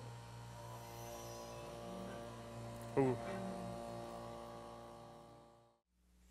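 A vacuum pump drawing the air out of the turbine rig's system, running as a steady machine hum with several fixed tones over an electrical hum. It starts about a second in and fades out just before the end.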